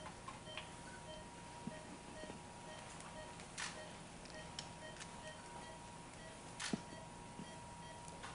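Faint, regular short electronic beeps from a patient monitor tracking the heartbeat, over a steady high tone, with two brief clicks of handling partway through.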